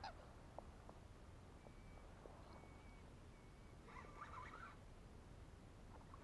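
Near silence with faint bird calls: a few thin short whistles, then a brief cluster of calls about four seconds in.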